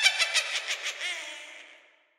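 A high-pitched cackling laugh that bursts in suddenly as a rapid run of 'ha-ha' pulses, loudest at the start and fading away within two seconds.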